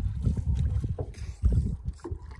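Wind buffeting the microphone, a low rumble that rises and falls in gusts, loudest about one and a half seconds in.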